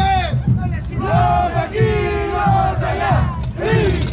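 Men shouting and whooping in loud, long held calls, several voices overlapping, over crowd noise with a pulsing low beat beneath.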